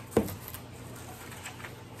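Faint rustling of plastic wrap and a paper note being handled inside an opened cardboard box, with a brief short sound just after the start.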